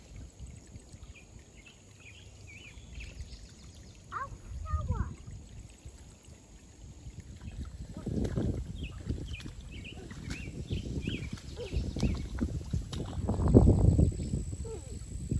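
Shallow creek water splashing and sloshing around a wading toddler's feet, with low rumbling bursts that grow louder in the last few seconds and faint high chirps in the background.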